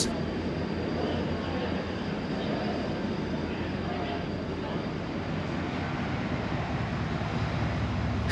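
Busy railway station platform ambience: a steady low rumble of trains with a background murmur of people.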